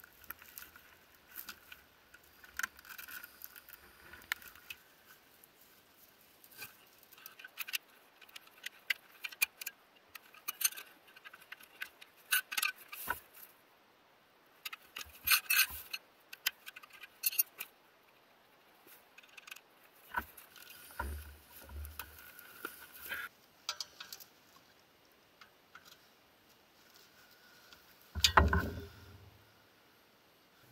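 Metal tyre levers clicking and scraping against a spoked motorcycle rim and a knobby tyre as the tyre is levered off, in irregular short clicks and scrapes. A louder thump about two seconds before the end.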